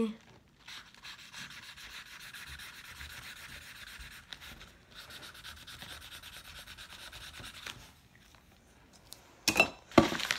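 Permanent marker scribbled rapidly back and forth over a paper shipping label on a plastic mailer: a dry, scratchy rubbing with a brief pause about halfway. It stops about two seconds before the end, and a single knock follows near the end.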